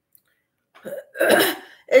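Near silence, then a woman clears her throat with a short cough about a second in, and begins to speak right at the end.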